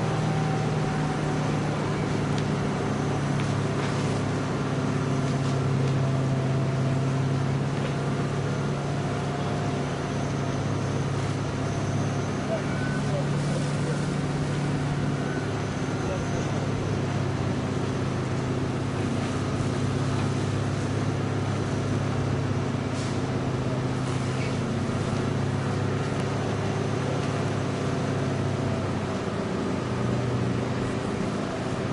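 Fire engine's engine running steadily at a constant speed, driving the pump that feeds the hoses, with voices in the background.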